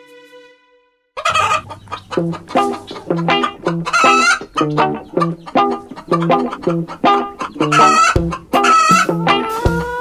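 A fading held note and a moment of silence, then about a second in an upbeat comic music cue starts, with a plucked-string beat about twice a second. Chicken clucks and rooster calls are mixed in over it.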